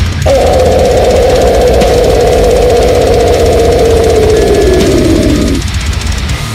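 One long death-metal growl, held for about five seconds and sagging lower near its end, over a brutal death metal backing track with heavy, dense drums and bass.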